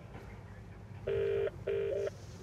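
British telephone ringback tone over a car's Bluetooth hands-free speaker: one double ring, two short steady tones close together, starting about a second in, as an outgoing call rings out.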